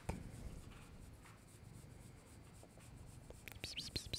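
Fingers scratching a cat's fur, faint soft rubbing at first. Near the end it turns into a quicker, louder run of scratchy strokes.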